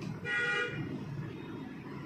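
A single short horn-like toot, about half a second long, near the start, heard over a steady low background hum.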